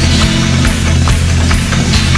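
Brazilian rock music in an instrumental passage with no singing: a band's drums keep a steady beat over sustained bass notes, with guitar.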